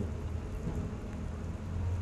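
Steady low background rumble with a light hiss, no clear event standing out.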